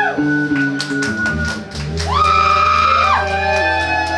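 Live band jamming: drums, a deep bass line and a held lead melody whose notes bend up in pitch, the longest sustained from about halfway through to near the end.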